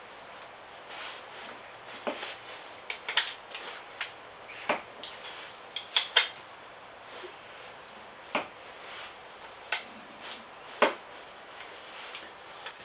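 Hand tools clinking against a motorcycle engine's metal crankcase cover, about eight sharp, irregular metal clinks over faint background hiss, as the engine is readied to be turned over by hand.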